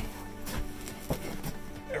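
Quiet background music with a few faint, short rustles and clicks as hands work a cable through loose cellulose insulation in a ceiling cavity.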